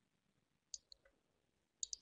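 Computer mouse clicking: two quick pairs of sharp clicks, about a second apart, over near silence.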